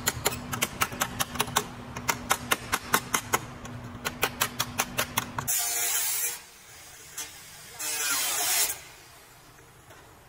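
Rapid hammer blows on a car's steel body panel, about five a second, with a steady low hum beneath, for the first five seconds or so. Then an angle grinder cuts sheet steel in two short bursts, each under a second.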